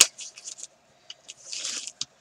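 Patterned scrapbook paper being folded and creased by hand: a sharp click, then short crisp rustles and scrapes, with a longer rustle as the fold is pressed down near the end.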